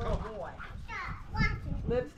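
Voices: children playing and people talking, with a child's high voice rising and falling.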